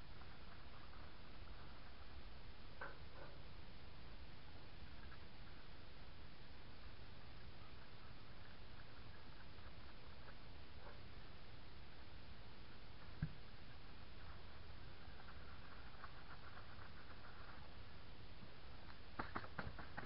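A steady low background hiss with a few faint clicks and light scratching from a lug nut being threaded by hand onto a backhoe wheel stud.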